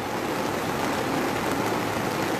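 Heavy rain falling steadily, a constant hiss of water.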